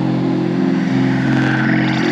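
Live electronic music played on hardware synthesizers: sustained low synth tones that step to new pitches about halfway through, with a higher tone gliding up and back down near the end.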